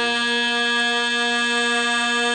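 Traditional Korean court music (jeongak) played by an instrumental ensemble, holding one long, steady note.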